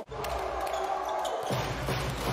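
Basketball game audio from the arena: a ball bouncing on the hardwood court over crowd noise, with faint music underneath.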